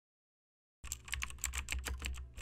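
Computer keyboard typing sound effect: after a silent first second, a fast run of key clicks, about ten a second, over a low hum.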